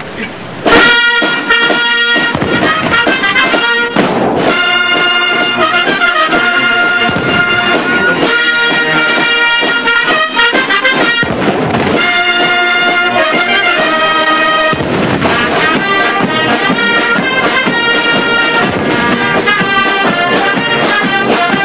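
Military brass band with drums playing, starting loudly about a second in. Booms from the artillery gun salute sound under the music several times.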